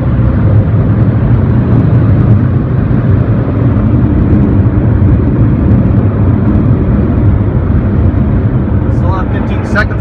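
Car-wash high-velocity air dryer blowers running steadily and loudly, heard from inside the truck's cab.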